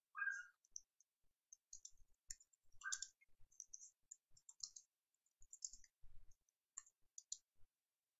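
Typing on a computer keyboard: faint, irregular key clicks, with a couple of louder strokes about a third of a second in and about three seconds in.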